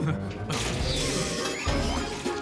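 Sound effect of a contraption being set running: a dense mechanical noise, loudest in the middle, over a steady low hum, with music underneath.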